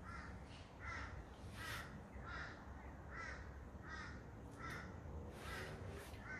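A bird calling faintly over and over, short calls repeated about every three-quarters of a second.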